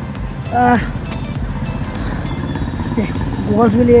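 A motor vehicle engine, motorcycle-like, running steadily with a low, even hum, with brief words spoken over it.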